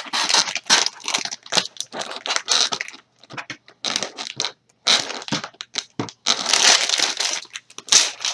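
Plastic packaging crinkling and crackling as it is handled and moved, in fits and starts with short pauses between.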